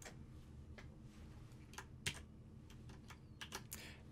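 Faint computer keyboard keystrokes: a handful of separate clicks spread unevenly, with a few in quick succession near the end.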